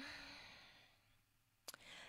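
Near silence, opening with a faint exhaled breath that fades out within about half a second, and a small click near the end.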